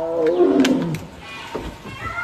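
Tiger giving one loud roar that falls in pitch over about a second, then fades.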